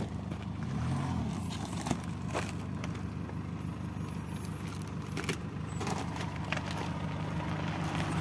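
Nissan Navara pickup's engine running steadily at low revs as the truck crawls over a log bridge. A few sharp clicks and knocks are heard along the way.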